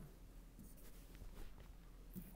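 Near silence: room tone with a few faint light scratches.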